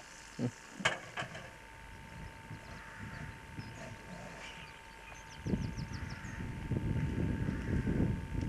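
Wind buffeting the microphone: an irregular low rumbling gust that sets in about five and a half seconds in and keeps growing. Just before it, a short run of quick high chirps.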